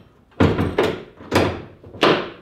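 Dull thunks from a Jeep Wrangler JK's shut hood as it is pressed down and latched at its front edge. There are two heavy thunks about a second apart, with a lighter knock between them.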